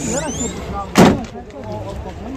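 A car door slammed shut once, a single loud thud about a second in.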